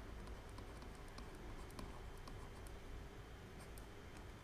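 Faint, irregular taps and scratches of a pen stylus writing on a drawing tablet, over a low steady room hum.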